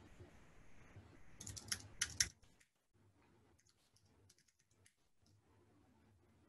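Computer keyboard typing, faint: a quick run of keystrokes about a second and a half in, ending in the loudest taps, then a fainter, sparser run a second or so later. This is a password being typed at a terminal prompt and then typed again to confirm it.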